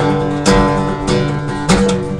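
Acoustic guitar strummed, chords ringing between a few sharp strums.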